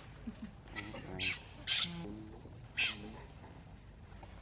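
A baby macaque screams three times in shrill distress cries, each dropping in pitch at the end, while its mother holds it by the head.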